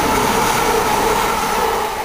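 Class 170 Turbostar diesel multiple unit passing through the station at speed: a loud, steady rush of wheels and air with a steady whine over it.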